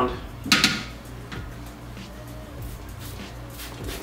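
Trigger spray bottle on its mist setting squirting soapy water onto a K&N air filter: a sharp hiss about half a second in, then a run of fainter, quick squirts near the end, over quiet background music.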